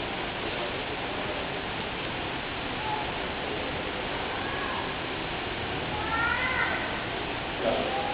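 Steady background noise with a few short high-pitched cries that rise and fall in pitch, the longest and loudest about six seconds in and another just before the end.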